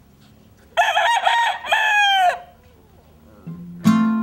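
A rooster crows once, a call of about a second and a half that wavers and then falls away at the end. Acoustic guitar notes begin near the end.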